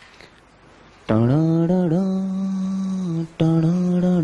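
A man's voice holding a long sung note on one drawn-out syllable ("taaa"), steady in pitch with a brief dip. It starts about a second in, breaks off for a moment after about three seconds, then picks up again.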